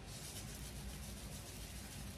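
Faint steady hiss of background room noise, with no distinct sound events.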